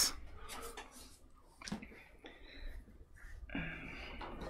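Faint, irregular rubbing of a white vinyl eraser across the pencil lines on a birch wood panel, with a few soft taps.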